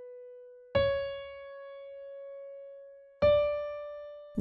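Piano playing the top of an ascending D major scale one note at a time: a B rings on, C sharp is struck about a second in, and the high D is struck near the end. Each note rings and fades.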